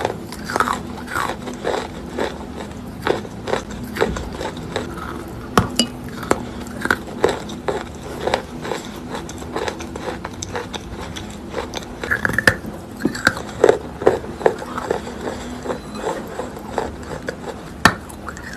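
Close-up biting and chewing of wet chalk: irregular crunchy clicks as the soft chalk breaks, with wet mouth and lip sounds between bites.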